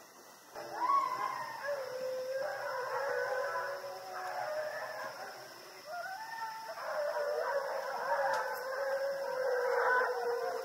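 A pack of foxhounds baying together, many overlapping howling voices. There is a short lull about five seconds in, then the chorus builds again.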